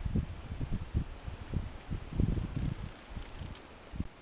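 Wind buffeting the camera's microphone, a low rumble that comes and goes in uneven gusts.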